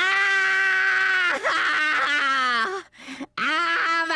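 A cartoon character's voice letting out long, drawn-out screams as he turns into a monster. The first is held at one pitch for over a second, the second sags lower, and a third begins near the end.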